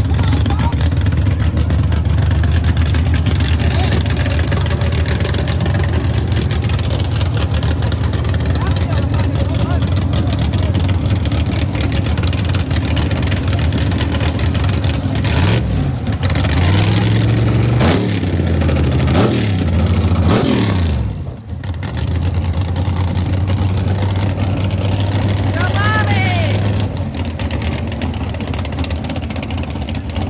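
Drag-race car engines running loudly with a deep steady drone. About halfway through comes a run of rising and falling revs as the Camaro race car revs at the start line amid tire smoke.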